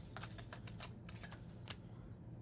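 A deck of tarot cards being shuffled by hand: a quick run of soft card clicks and flicks that thins out toward the end.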